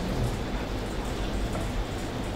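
Steady background hiss with a low hum and no speech: the room and microphone noise of the hall's recording.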